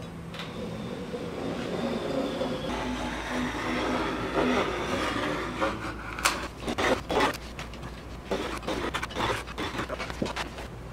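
A knife cutting a thin sheet of wood veneer along a straightedge: a scratchy drawn stretch over the first half, then a run of short sharp scrapes, taps and rustles as the blade passes and the straightedge and sheet are handled.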